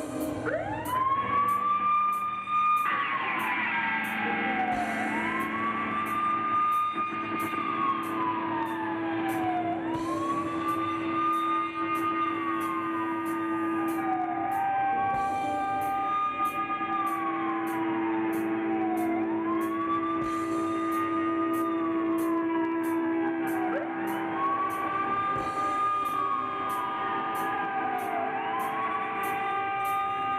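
A live rock band plays a passage built on a siren-like wail that rises, holds and falls about every four to five seconds. Under it run a sustained low note and a steady high ticking beat.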